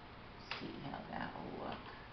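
A short voice-like sound starting about half a second in and lasting a little over a second, opening with a sharp click, over faint room noise.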